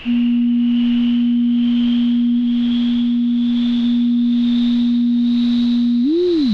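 Psychosynth software synthesizer's sine-wave oscillator sounding a steady pure tone at one fixed low-middle pitch. It starts abruptly and is the loudest sound. Beneath it runs a quieter band of filtered noise hiss that slowly rises in pitch and swells about one and a half times a second.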